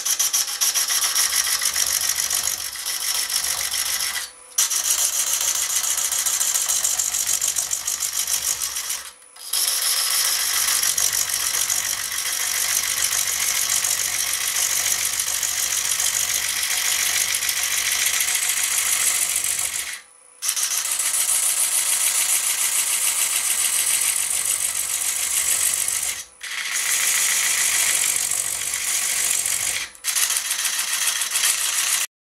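Turning tool cutting the end face of a spinning log on a wood lathe: a steady hissing shear of wood shavings, broken by four brief pauses in the cut.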